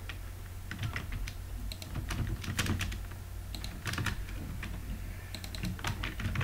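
Typing on a computer keyboard: irregular runs of key clicks with short pauses between them, over a low steady hum.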